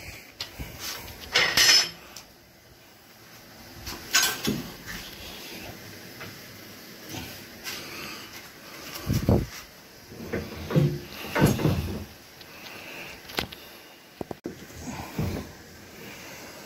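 A series of separate clanks and knocks as a wire-mesh enclosure and a large waste bin's lid are handled and opened, with handling and rustling noise between the knocks.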